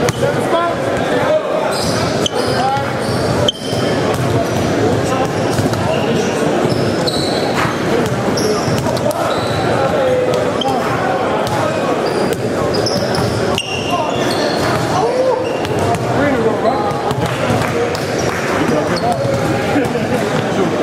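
Basketballs bouncing on a hardwood gym floor amid a steady hubbub of many indistinct voices, echoing in a large gym.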